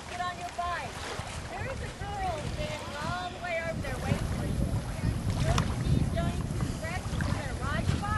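Distant children's voices chattering and calling from a group, over a steady low rumble of wind on the microphone.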